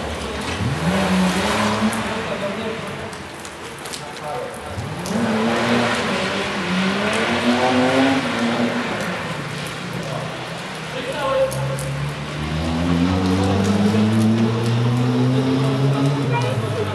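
Rally car engine accelerating hard along a closed street stage. The pitch climbs in three surges, and in the middle one it rises and drops back several times as the car shifts up through the gears.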